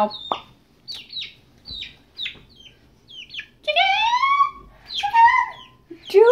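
Young pet chicken peeping: a string of short, high, falling peeps, then two louder, longer rising calls about four and five seconds in, as it is chased about on a bed.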